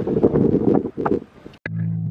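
Wind buffeting the microphone, a low gusty rumble that dies away a little past a second in. Organ music starts just before the end.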